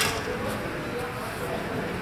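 A single sharp clack of a steel practice longsword hit, right at the start, followed by the steady noise of a large hall with two faint ticks.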